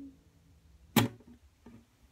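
The last chord of an acoustic guitar dies away at the start, then one sharp knock about a second in, with a fainter knock later.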